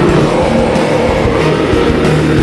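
Symphonic metal band playing live: heavy distorted guitars, bass and drums in a loud, dense instrumental passage.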